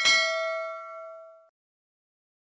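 Notification-bell chime sound effect: one bright ding that rings out and fades away after about a second and a half.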